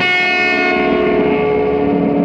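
Music: a loud, sustained droning chord of effects-processed guitar, many tones held together. Its highest tones fade away after about the first second.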